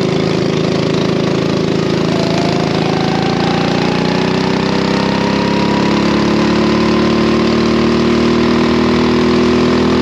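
Racing kart engine under full throttle, its pitch climbing slowly and steadily as the kart gathers speed.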